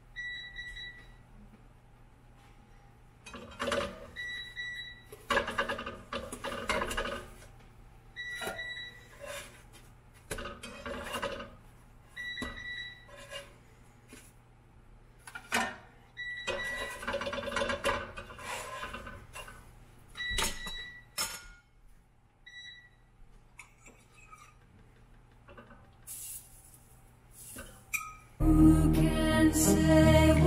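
Kitchen cooking noises: a plastic spatula scraping and tapping in a nonstick frying pan in irregular short bursts, with a short high beep repeating every few seconds and a faint steady low hum underneath.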